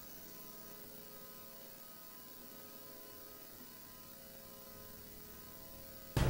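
Faint, steady electrical hum made of several even tones: low-level room tone of the meeting's sound feed.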